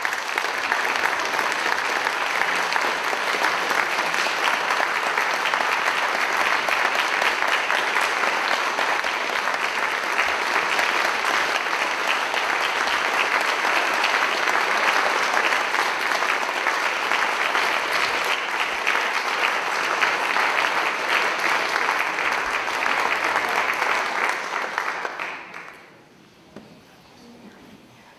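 A large audience applauding, a dense steady clapping that keeps up for about 25 seconds and then dies away near the end.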